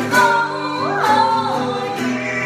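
A woman and a man singing a duet to a strummed nylon-string classical guitar; one voice swoops up in pitch and back down about a second in.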